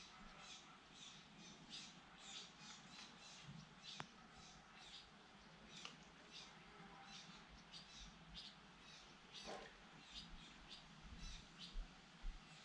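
Faint outdoor birdsong: small birds chirping in quick, repeated short calls, with one harsher call about nine and a half seconds in.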